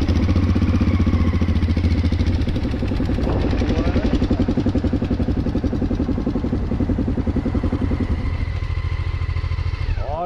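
Motorcycle engine running at low revs with an even, rapid pulsing beat, heard from on board the bike. A short rising note comes in about three seconds in.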